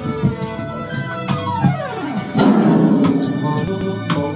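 Unreleased band track with drums played back loud over studio control-room monitors. A long falling pitch sweep runs through the middle, and the music gets louder about two and a half seconds in.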